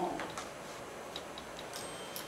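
Quiet room tone with a few faint, light ticks.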